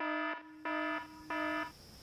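Electronic buzzer sound effect: three short, flat-pitched buzzes, evenly spaced, each starting and stopping abruptly, used as a 'busted' signal.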